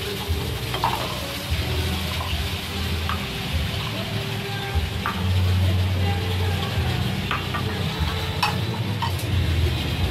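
Glass beer mugs and ceramic bowls being set down and handled on a tiled floor, giving a few scattered clinks and knocks over a steady rumbling background noise.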